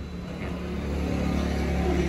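A motor vehicle engine running steadily, growing gradually louder.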